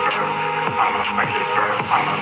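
Electronic horror-themed loop music played on the pads of a phone beat-making app, a beat under layered pitched loops with repeated falling-pitch swoops.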